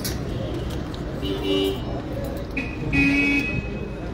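Two short car-horn toots over street and crowd noise: one about a second in, and a second, louder one about three seconds in.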